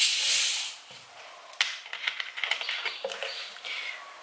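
Carbonation hissing out as the screw cap of a 1.5-litre plastic bottle of fizzy orangeade is twisted open, a strong hiss lasting under a second. It is followed by a click and faint crackling.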